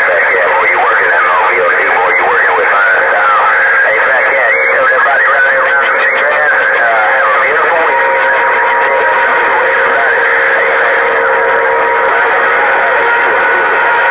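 Ranger HR2510 radio's speaker playing received audio on 27.085 MHz (CB channel 11): several distant voices talking over one another with steady whistling tones, in a narrow, tinny band. This is the reply coming back to the operator through a crowded channel.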